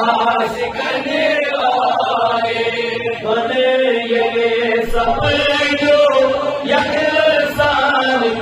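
A man chanting a Kashmiri naat, a devotional song in praise of the Prophet, into a microphone in long, held, wavering notes.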